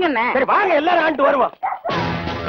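A man's raised voice shouting in short bursts, with the pitch swooping up and down. Background music cuts in just before the end.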